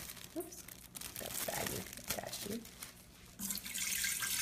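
Water pouring from a bowl into the stainless steel inner pot of an Instant Pot, starting about three and a half seconds in, after a few seconds of faint handling sounds.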